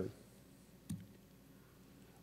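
A single sharp click about a second in, a laptop key pressed to advance a presentation slide, over faint room tone.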